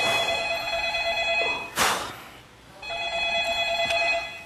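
Telephone ringing with a trilling electronic ring, heard as two rings: the first stops about a second and a half in, and the second starts near three seconds. A short, sharp noise sounds in the gap between the rings.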